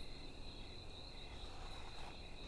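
Faint insect trilling, a steady high-pitched trill that fades out near the end.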